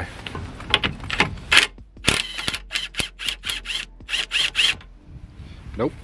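Cordless impact gun hammering on a sway bar drop link's top nut in several short bursts, failing to break the nut loose.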